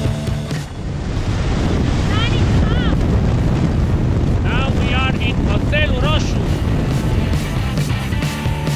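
Wind rushing over the microphone of a camera on a moving motorcycle, with music that cuts off within the first second. High sliding calls come in two short groups over the wind noise, about two seconds in and again between four and six seconds in.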